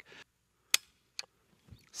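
Stevens 555 over-under shotgun's trigger breaking under a trigger pull gauge: one sharp dry-fire click, then a fainter click about half a second later. The pull is heavy, about six pounds five ounces.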